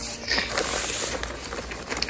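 Plastic kit bag crinkling and rustling as it is handled, loudest in the first half-second.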